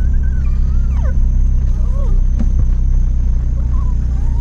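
Steady low rumble of engine and road noise heard inside a moving car's cabin, with a few faint wavering tones over it.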